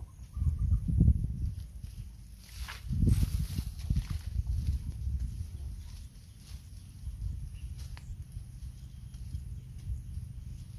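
Rustling of leaves and stems and footsteps as a person pushes through dense undergrowth, with the loudest burst of rustling about three seconds in, over a low uneven rumble.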